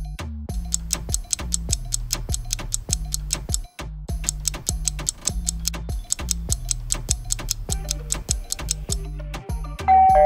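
Quiz countdown-timer music: rapid, even ticking over a low bass line that steps between notes, with a brief break a little over a third of the way in.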